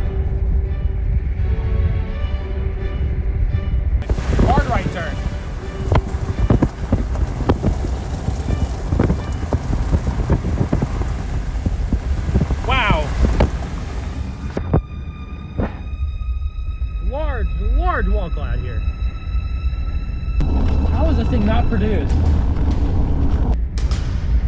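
Music with a constant deep rumble of wind and road noise under it, and brief voice sounds breaking through a few times. A steady high tone sounds for several seconds past the middle.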